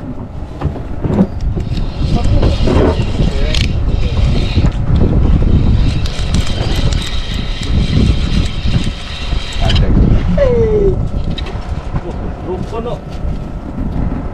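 Spinning reel being cranked to retrieve line: a steady whine from about two seconds in until nearly ten seconds, over a constant low rumble.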